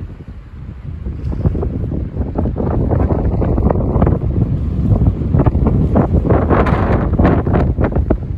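Wind buffeting the microphone in gusts: a loud low rumble with irregular crackles, building about a second in and strongest in the second half.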